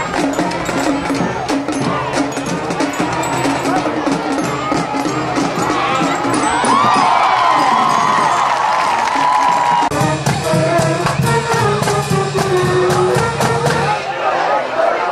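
Crowd noise and cheering from the stands with shouting voices during a football play. About ten seconds in the sound changes sharply to music with drum strokes.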